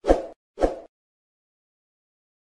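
Two short pop sound effects about half a second apart, each starting suddenly and dying away quickly, from an animated subscribe-button overlay.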